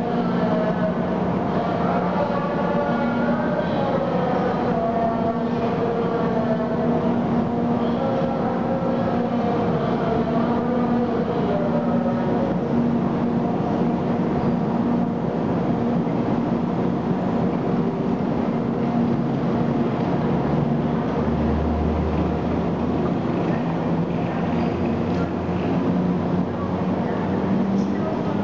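EF64 1000-series DC electric locomotive moving slowly away, a steady machine hum with several whining tones that drift slightly lower and fade as it goes, echoing in the station hall. A brief deeper rumble comes near the end.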